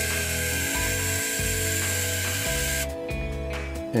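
Small electric motor and gear train of a 1975 Mego Action Stallion battery-operated toy horse, whirring as the bare mechanism walks the legs. The whirr stops for about a second near the end, then starts again.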